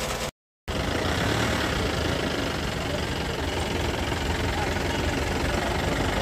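Pickup truck's engine idling steadily, after a moment of dead silence near the start.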